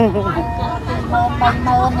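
A woman talking, close to the microphone, over a steady low rumble in the background.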